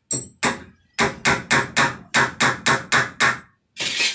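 Hammer striking a galvanized iron sheet: about a dozen sharp, ringing metallic blows, two spaced apart at first, then a quick run at about four a second, and one last blow near the end.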